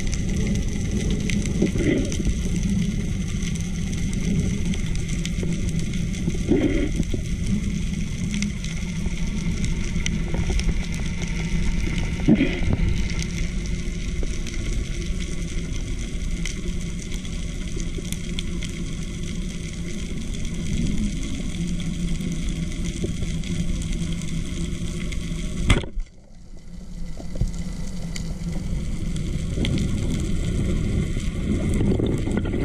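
Muffled, steady rumbling underwater noise of water moving past a camera housing as a diver swims, with a few short knocks. Near the end it briefly drops away, then returns.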